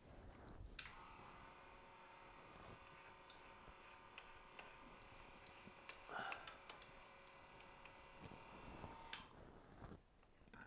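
Faint steady hum of a small electric motor, starting suddenly and cutting off about eight seconds later, with scattered light metallic clicks.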